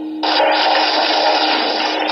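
Studio audience applauding, the clapping starting abruptly a moment in and holding steady.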